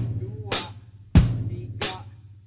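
Acoustic drum kit played at a slow tempo as a hand-foot separation exercise: hi-hat strokes about every two-thirds of a second, with a bass drum kick landing together with one of them about a second in. The bass drum's low ring hangs between the strokes.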